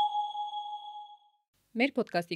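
A single chime sound effect at a cut: one sharp strike whose clear, steady tone fades away over about a second and a half, then a moment of silence before a woman starts speaking near the end.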